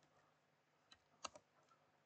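A few faint, scattered computer keyboard keystrokes in the second half, against near silence.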